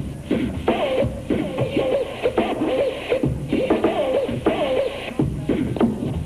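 A DJ cutting up records live on two turntables and a mixer: a short vocal-like snippet repeated again and again in quick stabs over a hip-hop drum beat, chopped in and out.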